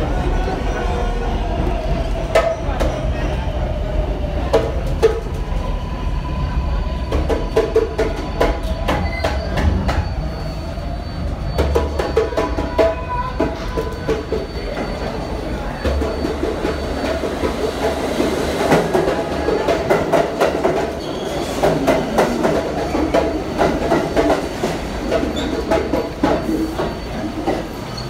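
New York City subway trains running through an underground station: one passing on the far track, then another pulling in alongside the platform. The wheels clatter over the rails with many sharp clicks and squeal intermittently in high ringing tones.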